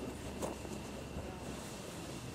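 Faint, steady wind noise on the microphone, with a single faint click about half a second in.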